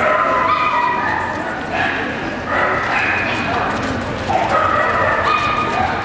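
A dog whining and yipping in high, drawn-out cries, in three bouts. Crowd chatter of a busy hall runs underneath.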